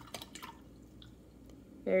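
Watercolour brush being rinsed in water: a few faint drips and light ticks, then a woman starts speaking near the end.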